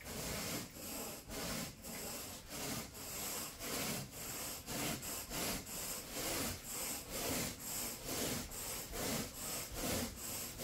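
Carpet grooming rake dragged back and forth through thick carpet pile, a regular scraping brush about one to two strokes every second.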